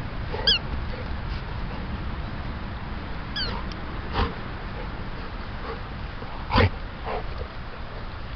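Dog giving two short, high whines that fall in pitch, about half a second and three and a half seconds in, over a steady low rumble. A couple of sharp knocks come later; the loudest is near the end.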